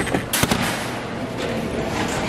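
A single sharp knock about half a second in, then steady background noise.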